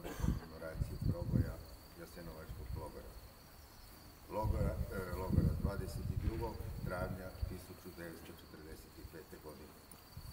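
A man's voice reading a speech into microphones, in two stretches with a quieter pause between them. Underneath is a steady, thin, high-pitched whine.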